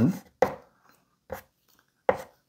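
Chalk strokes tapping sharply on a blackboard as a limit expression is written, twice, about a second apart.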